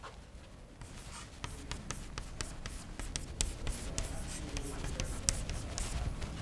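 Chalk writing on a blackboard: a quick, irregular run of taps and scratches from the chalk, starting about a second in.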